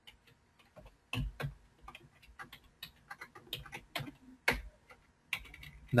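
Quiet, irregular clicking of a computer mouse and keyboard keys as spreadsheet cells are selected, cut and pasted. The loudest clicks come just after a second in and at about four and a half seconds.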